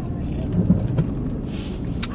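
Steady low rumble of an idling car heard from inside the cabin, with a brief soft hiss about one and a half seconds in.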